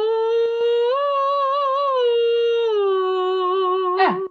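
A woman's voice humming a slow, unbroken legato line. It glides up a step about a second in, holds with a light vibrato, then slides down in two steps, each note joined to the next by a small portamento with no break in the sound.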